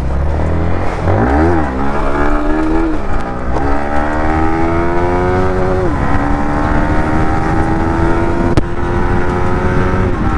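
Yamaha MT-15's single-cylinder engine pulling away and accelerating. The note climbs in each gear and drops at upshifts about three and a half and six seconds in, then rises slowly in the higher gear.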